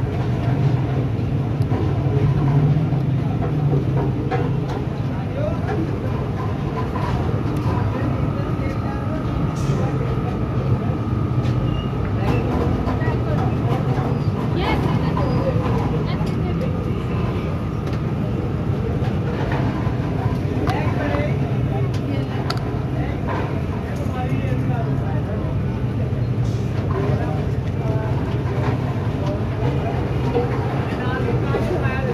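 Busy street-food stall ambience: a steady low rumble with background voices and scattered clatter. A faint steady tone runs for about ten seconds in the middle.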